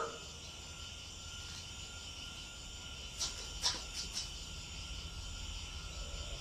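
Crickets chirping steadily in a quiet night-time ambience, with a few short clicks about three to four seconds in.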